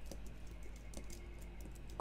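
Faint typing on a computer keyboard: a handful of light, irregular keystrokes over a low steady hum.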